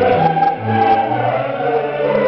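A mixed choir singing a Baroque choral piece with a string orchestra, sustained chords over a bass line that moves from note to note.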